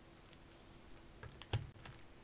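Foil Pokémon booster packs being handled and shuffled: a few light clicks and crinkles about a second in, over a faint steady hum.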